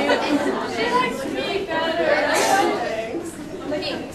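Chatter of a group of students, several voices talking over one another with no single clear speaker.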